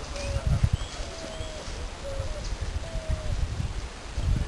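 Wind rumbling on the microphone of a handheld camera, with a bird giving about five short, faint whistled notes.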